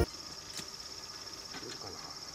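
An insect trilling steadily in a high, finely pulsed note, faint outdoor ambience, with a single light tap about half a second in.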